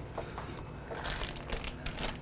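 Cloth rustling and light crinkling as a beach towel is drawn off a table of groceries and their plastic packaging is handled, with small irregular clicks and scrapes.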